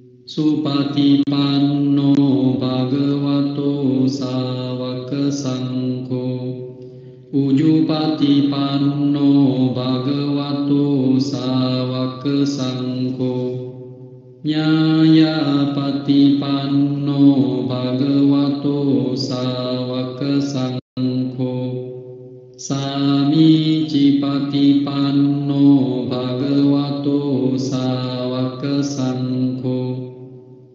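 Buddhist devotional chanting: a voice intoning long, steadily held tones in four phrases of about seven seconds each, with short breaks between them.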